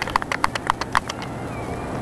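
A quick, irregular run of about ten sharp clicks or taps over roughly the first second, thinning out after that.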